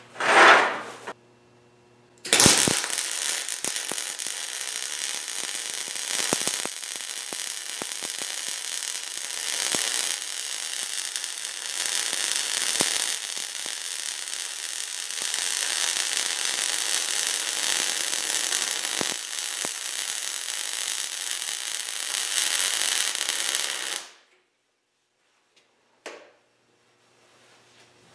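MIG welding arc from a Millermatic 350P running a square-groove butt weld on mild steel at 20 volts and 220 inches per minute wire feed. It is a steady crackling hiss that starts about two seconds in, lasts roughly 22 seconds and stops abruptly.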